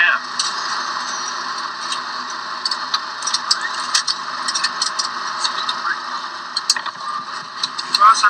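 Airliner cockpit sound on the landing rollout: steady engine and airflow noise with scattered clicks and rattles, played back through a computer's speaker.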